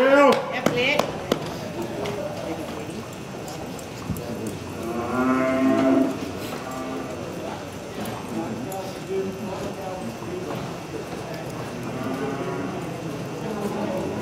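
Cattle mooing: one long moo about five seconds in, with shorter calls at the start and a faint one near the end.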